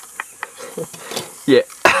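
A man's short bursts of laughter with a string of sharp, irregular clicks.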